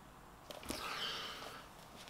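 Card and paper rustling and sliding as the album-sleeve package is drawn out of a sturdy cardboard box-set case, starting with a light click about half a second in and fading near the end.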